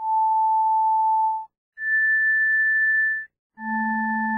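Pure electronic test tones, each held steadily for about a second and a half with short gaps between them. First comes a single mid-pitched tone, then one an octave higher. About three and a half seconds in, a low tone starts sounding together with both of those as a chord. They are demonstration tones for showing different parts of the cochlea's basilar membrane responding to different frequencies.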